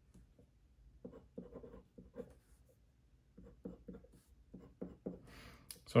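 Glass dip pen scratching on paper in a string of short strokes, drawing bond lines and writing letters.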